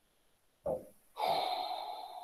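A person's breathing: a short breath just over half a second in, then a longer breath of about a second that fades out.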